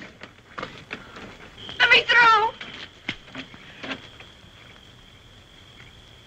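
A person's voice: one brief, wavering wordless cry about two seconds in, over a faint hiss. A thin, steady high-pitched whine joins it and carries on after.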